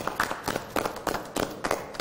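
A small group of people applauding: quick, uneven hand claps from several people at once.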